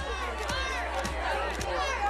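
A crowd of press photographers shouting and calling out over one another, with camera shutter clicks scattered through and a low hum underneath.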